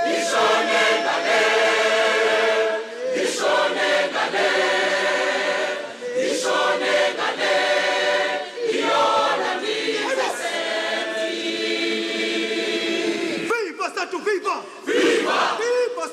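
A large mixed choir singing in full harmony, in held phrases that break off every few seconds. Near the end the held chords give way to short, wavering cries and shouts.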